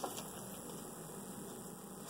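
Faint room tone: a low steady hum under even hiss, with a tiny click near the start.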